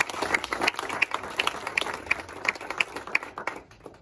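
Audience applauding, with a few close, louder claps standing out from the rest; the applause dies away near the end.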